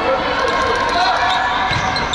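Futsal ball being kicked and bouncing on the sports hall floor, several short sharp knocks, with players' shouts ringing in the hall.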